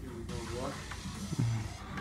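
Faint voices murmuring, with a short low hum about a second and a half in.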